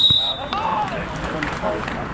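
Referee's whistle blowing one long, steady, high blast that stops about half a second in: the final whistle ending the match. Voices of players and spectators follow.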